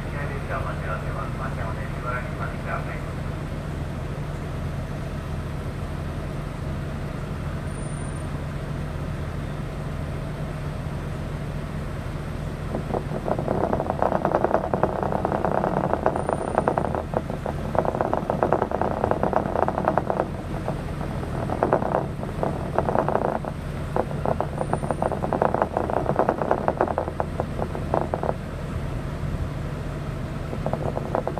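Diesel railcar standing still with its engine idling, a steady low hum. From about halfway through, a louder, irregular, muffled chatter comes and goes over it.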